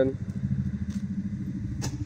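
A motor vehicle's engine running, a low rumble with a fast, even pulse, with one sharp click near the end.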